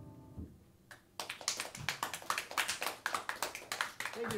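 A jazz combo's final chord on piano, electric guitar and bass rings briefly and cuts off, then a small audience applauds, starting about a second in.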